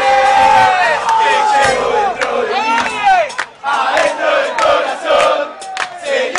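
A football supporters' crowd singing a Spanish-language terrace chant in unison, many voices together, with sharp percussive hits through it. The singing dips briefly past the middle, then goes on.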